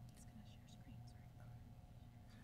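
Near silence: a low steady room hum with a few faint, brief whispered sounds.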